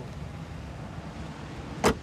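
A police car's rear door slammed shut once near the end, a single sharp bang over the steady hum of the idling car.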